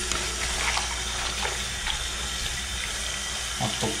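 Bathroom sink faucet running steadily, its stream splashing into a basin of soapy water.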